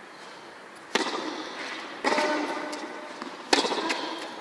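Tennis ball struck by rackets in a rally: the serve about a second in, the return about two seconds in, and the next stroke near the end, the loudest. Each hit echoes under the metal-roofed court.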